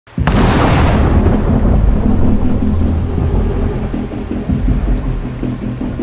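A thunderclap cracks just after the start and rolls on into a long low rumble, over steady heavy rain.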